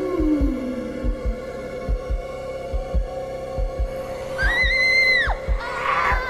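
Horror-film soundtrack: a heartbeat-style double thump, about one double beat a second, over a steady low drone, with a low groan falling in pitch at the start. About four and a half seconds in, a woman's high scream is held for most of a second and then drops off.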